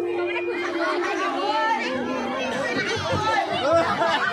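A large outdoor crowd chattering, many voices overlapping at once, while one held note left over from the music fades out in the first second.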